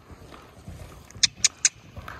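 Muffled hoofbeats of a horse trotting on soft arena sand, with three quick tongue clicks a little past halfway, clucking the horse on.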